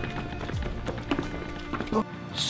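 Background music with sustained tones, over a quick series of footsteps in sneakers going down concrete stairs.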